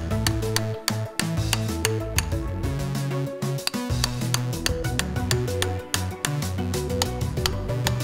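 Background music with a steady beat, over irregular light metallic clinks of a cast bronze chisel tapped against a bronze knife blade to cut saw teeth into its edge.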